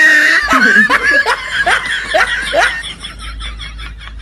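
Laughter: a rapid run of falling 'ha' bursts, loud at first and fading away after about three seconds.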